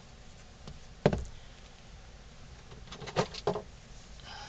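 Knocks from a plastic tub of wood filler being handled and set down on a table: one sharp knock about a second in, then two more in quick succession near the end.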